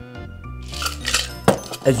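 Ice rattling and clinking in a metal cocktail shaker as the last of the drink is double-strained through a fine mesh strainer, followed by a sharp metal clink near the end. Background music plays throughout.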